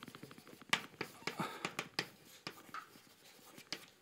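Chalk writing on a blackboard: an irregular string of sharp taps and short scratches as letters are written.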